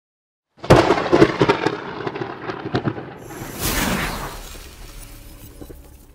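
Logo-intro sound effect: a quick run of booming hits, then a whoosh that swells and slowly fades out.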